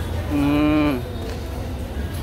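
A man's voice holding a single drawn-out hum for under a second, starting about a third of a second in, its pitch steady and dipping at the end, over the steady background of a busy covered market.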